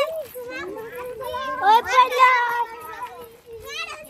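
Several children's voices chattering and calling out over one another, loudest about two seconds in.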